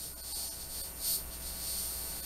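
Room tone: a low steady hum with faint high hiss, and a faint brief noise about a second in.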